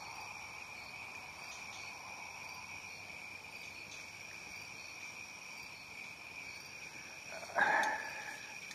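A steady chorus of insects giving a continuous high-pitched trill, with a brief louder rush of noise just before the end.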